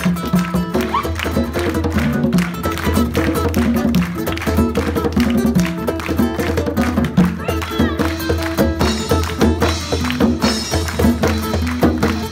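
Live band playing a steady, rhythmic groove: acoustic guitar, a repeating bass line, and drums with cymbals.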